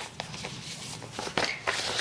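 Soft rustling of paper sticker sheets being handled, with a few light clicks and taps.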